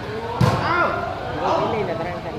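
A volleyball smacked hard by a player's hand: one sharp slap about half a second in, over shouting crowd voices.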